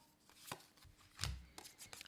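A few faint taps with a dull knock just over a second in, light impacts on a hard surface.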